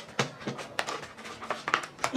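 A sealed packet being crinkled and tugged by hand as it is forced open without scissors: irregular crackling and rustling with scattered sharper clicks.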